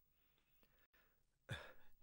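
Near silence in a pause of dialogue: a faint breath from a man, then his voice starting up again near the end.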